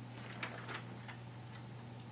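Quiet meeting room with a steady low hum, broken by four or five soft, irregularly spaced ticks and rustles of paper pages being handled.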